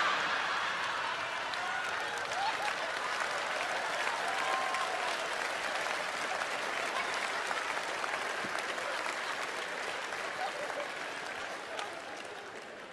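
Theatre audience laughing and applauding after a punchline, loudest at the start and slowly dying away toward the end.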